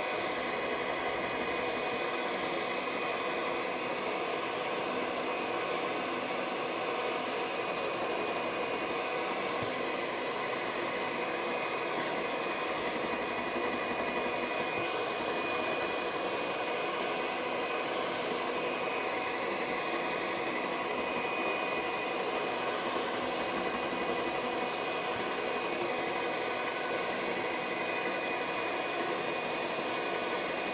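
Moulinex electric hand mixer running steadily, its beaters whisking egg whites and sugar into meringue in a glass bowl.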